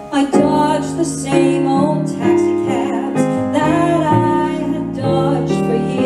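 A woman singing a slow song into a microphone, accompanied by a keyboard piano and double bass. Her voice comes in just after the start, with vibrato on held notes.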